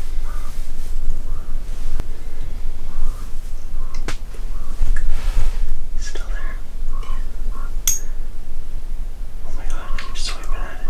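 Hushed, indistinct whispered talk over a steady low rumble, with a few sharp clicks, one of them high and thin near the end.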